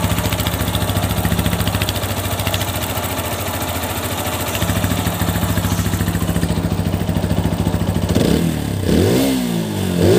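TVS Apache RTR 160 4V's single-cylinder engine idling steadily, then revved twice with quick throttle blips near the end.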